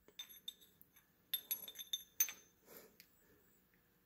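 Faint metallic clinks with a short high ring as a steel transmission gear, the fourth wheel gear, is handled and slid onto the splined drive axle of a Yamaha Raptor 660 transmission. Several light taps are spread through, the brightest just past two seconds in.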